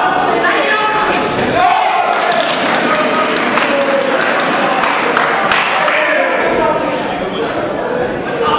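Spectators shouting and cheering at an amateur boxing bout in a hall, several voices overlapping, with a quick run of sharp smacks in the middle as the boxers trade blows and clinch.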